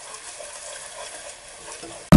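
Green masala paste frying in oil in a pot, with a steady faint sizzle and the light scrape of a wooden spatula stirring it.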